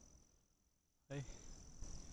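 Insects trilling steadily at a high pitch. The sound drops out to silence for well under a second in the middle, and a short burst of voice follows right after.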